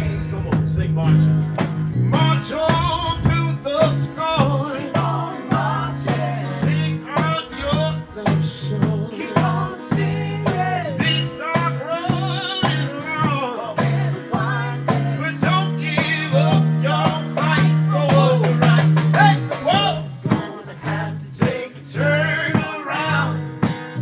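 A live band playing: a man singing lead over acoustic guitar, electric bass and drum kit.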